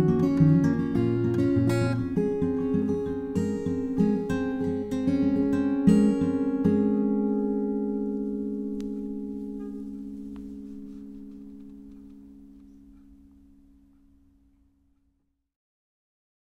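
Solo acoustic guitar finishing a song: picked notes for about six seconds, then a final chord left to ring and slowly fade away to silence.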